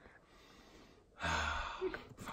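One loud breath from a man holding a waffle to his face, starting about a second in and lasting under a second.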